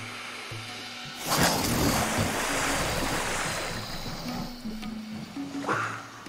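A sudden big splash about a second in, then rushing, churning water that slowly dies away: a black caiman bolting into the river.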